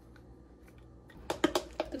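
Light clicks and taps from a spice bottle and glassware being handled on a kitchen counter. The first second is nearly quiet, and a quick run of sharp clicks comes in the second half.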